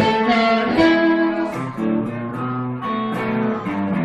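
Live blues band playing an instrumental fill: amplified blues harmonica, cupped against a bullet microphone, plays held notes over guitar accompaniment.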